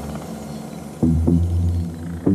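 Deep, sustained bass notes of a house music track with little percussion, a new bass note coming in about a second in.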